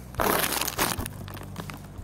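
Rough rustling and scraping handling noise, loudest for about the first second and then quieter, as a knit work glove handles the steering universal joint close to the microphone.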